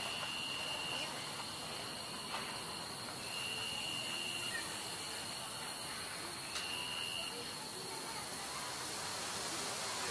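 Steady hiss with a continuous high, thin insect trill, and a slightly lower trill that comes in three times for about a second each.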